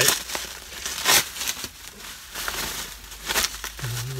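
Plastic bubble wrap being handled and pulled apart, crinkling and rustling in irregular bursts. The loudest bursts come about a second in and again near the end.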